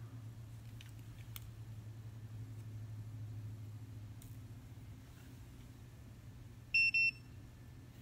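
Two short high-pitched electronic beeps in quick succession about seven seconds in, over a low steady hum.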